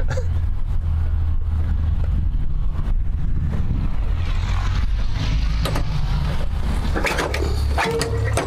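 Wind buffeting the microphone on an open airfield: a steady, gusting low rumble, with a few light knocks near the end.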